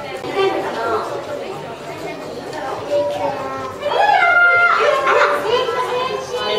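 High-pitched voices talking in a large hall, children's voices among them; one voice rises and gets louder about four seconds in.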